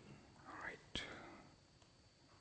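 Quiet room with a faint whispered mutter, then a single sharp click about a second in: a laptop key press.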